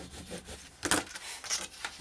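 Hands rubbing and handling a folded sheet of white cardstock, the paper rustling, with one short sharp tap about a second in.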